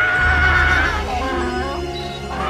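Trailer music with an animal whinny over it: a high held note that breaks into wavering, falling notes about a second in.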